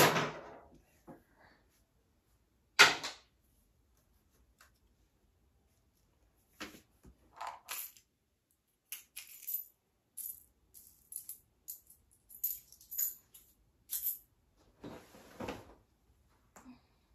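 Small toys being sorted by hand into a plastic storage bin: two sharp clatters, one at the start and one about three seconds in, then a long run of light clinks and jingles as small hard items are handled and dropped.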